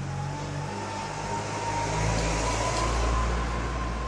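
Road traffic: a motor vehicle passing in the street, its low engine rumble swelling from about halfway through.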